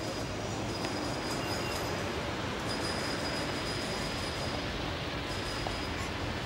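Steady city street background noise: a low, even rumble of traffic, with a faint high whine that comes and goes.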